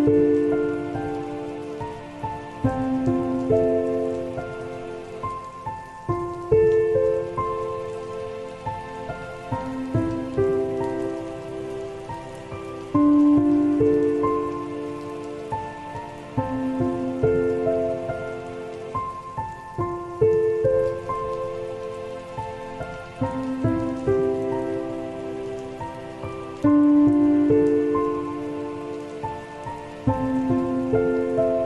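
Slow, soft piano chords over steady rain. A new chord is struck about every three to four seconds and left to ring and fade, with the patter of rain underneath throughout.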